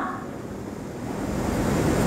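Steady rushing background noise with a low rumble, growing a little louder after the first second.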